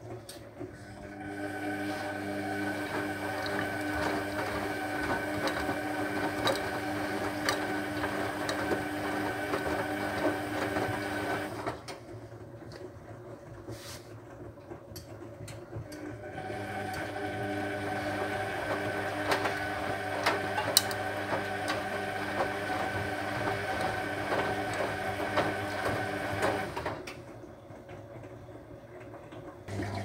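Hotpoint WF250 washing machine in its wash phase: the drum motor turns the wet laundry with a steady whine for about ten seconds, stops for about four seconds, then runs again for another ten seconds before stopping near the end.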